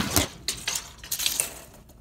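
Steel tape measure blade clicking and rattling against a wooden board as it is run out along it: about six sharp metallic clicks over the first second and a half, then it goes quiet.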